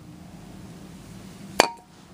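A metal aerosol can of rust treatment is set down on a concrete floor: one sharp clink about one and a half seconds in, with a brief ring. Faint steady background noise runs under it.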